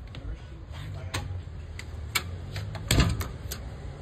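Scattered light clicks and knocks from moving about on a porch with a phone in hand, with one louder knock about three seconds in, over a low steady rumble.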